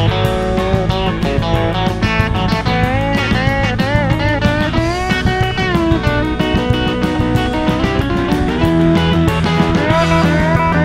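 Country band's instrumental break: a lead solo on a Telecaster-style electric guitar over bass and drums, with bent notes gliding up and down in the middle.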